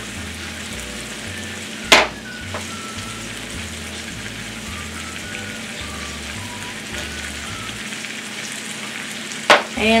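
Diced potatoes frying in oil in a cast iron skillet, a steady sizzle, with one sharp knock about two seconds in. A spatula stirs them near the end.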